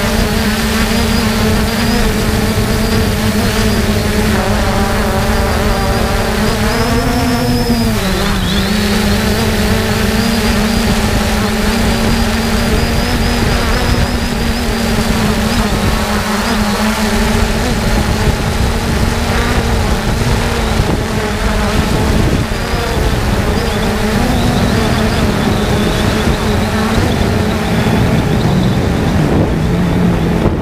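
3DR Solo quadcopter's motors and propellers humming steadily, picked up by the camera mounted on the drone itself. About seven seconds in the pitch rises briefly and then drops back. A low rumble of wind on the microphone runs under the hum.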